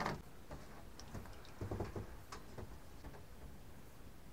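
Faint, irregular small clicks and handling noises from a fishing rod, reel and line being handled by hand.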